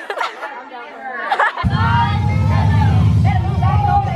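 Several people chattering. About one and a half seconds in, a loud low rumble starts abruptly and continues beneath the voices.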